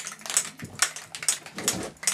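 Aerosol spray can being shaken, its mixing ball rattling in quick, even clicks, about five or six a second.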